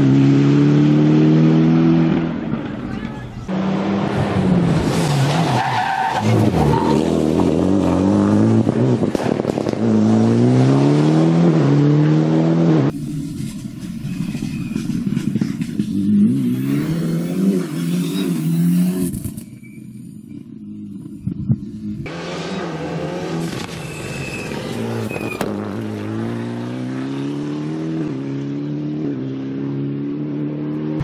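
Rally car engine, a Ford Fiesta Proto, revving hard under full acceleration, its pitch climbing and dropping back at each gear change, over and over as the car drives the stage. The sound breaks off abruptly twice, about 13 s and 22 s in.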